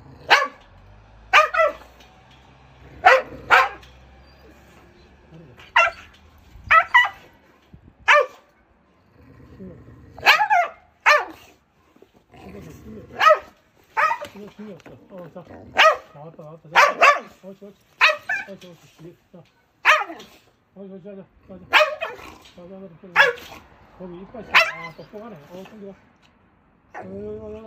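Yellow Jindo-type mixed-breed dog barking over and over, sharp single and double barks every second or two. These are the warning barks of an aggressive dog with a biting history, held on a leash and kept off with a shield.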